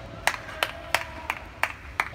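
One person clapping hands in an even rhythm, about six claps at roughly three a second.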